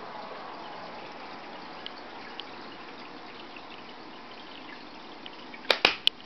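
Steady trickle of water from an aquarium filter, with two sharp hand claps in quick succession near the end, given as a cue to the dogs.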